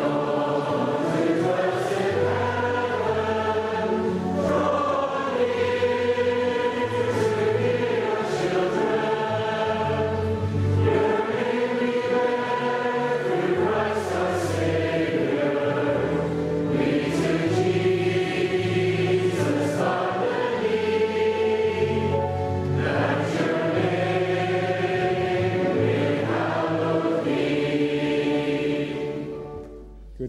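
A choir singing slow, sustained choral music over steady low notes.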